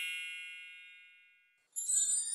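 A single bell-like chime ringing out and fading away over about a second, then a brief silence; near the end, jingling starts.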